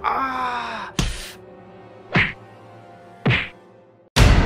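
A man's drawn-out pained cry, "Ahh!", falling in pitch, followed by a short rush of noise and two short harsh bursts about a second apart, over a dark, steady horror-film score.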